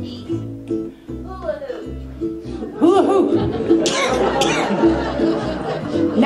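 Ukulele and upright bass playing a swung accompaniment of short plucked chords over walking bass notes. Voices and laughter come in over the playing, getting louder from about three seconds in.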